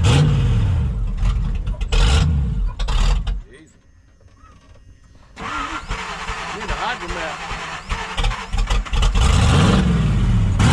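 Jeep Wrangler TJ engine revving under load, then cutting out about three and a half seconds in as it stalls on the climb. After a short quiet, the starter cranks with an even pulsing for a few seconds and the engine catches and revs again near the end.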